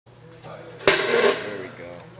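A single sharp knock just under a second in, followed by a brief burst of a person's voice.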